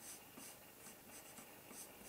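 Coloured pencil scratching on paper in a series of short, faint strokes as a drawn line is gone over a second time.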